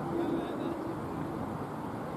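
Outdoor ambience of distant voices over a steady low rumble, with no bat or ball impact.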